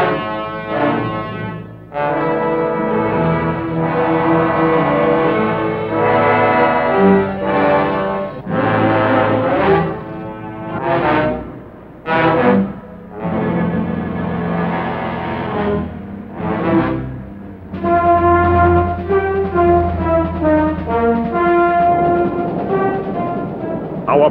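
Orchestral film score led by brass: held chords, a few short swelling chords in the middle, then a slow melody in long notes near the end.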